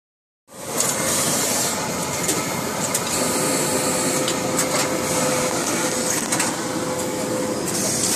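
Steady mechanical running noise and air hiss of garment-finishing machinery, with scattered light clicks and clanks and a faint steady tone in the middle stretch.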